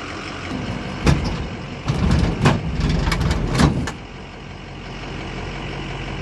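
Pickup truck engine idling while it backs up, with several metal clunks between about one and four seconds in as the fifth-wheel kingpin box slides onto the Demco Recon hitch plate and the jaws lock around the kingpin.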